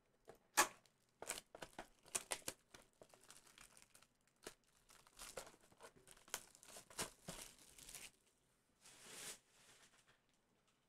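Cardboard blaster box of trading cards being torn open and its cellophane-wrapped card packs crinkling as they are pulled out. It comes as a faint, irregular run of crackles and snaps, with a soft rustle near the end.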